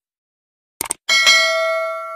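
Sound effect of a mouse click, two or three quick clicks, followed by a single bell ding that rings out and slowly fades: the notification-bell chime of a subscribe-button animation.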